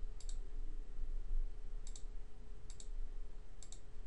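Computer mouse clicking four times, each click a quick press-and-release pair, as a drop-down filter is chosen, over a faint steady hum.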